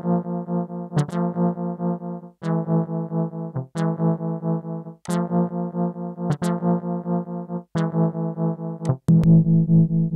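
A held synthesizer note run through the Narcotic plugin's tremolo, stutter and band-drive effects: one steady pitch chopped into fast pulses, about four a second, breaking off with a click about every second and a half. About nine seconds in it turns louder and fuller as the Toxins effect is added to the chain.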